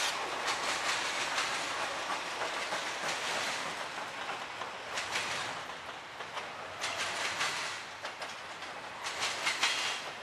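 Double-stack intermodal freight train rolling past at speed: a steady rush of steel wheels on rail, with groups of clicks as wheel sets cross rail joints, about every two seconds in the second half.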